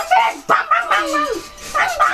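High-pitched, squeaky wordless voice sounds from a child, sliding up and down in pitch in short bursts. There is a sharp knock about half a second in.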